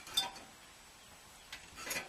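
Faint, brief light clinks and rubbing against a quiet room: a hand touching the thin aluminium fins of a fridge evaporator coil, once a moment in and again a little before the end.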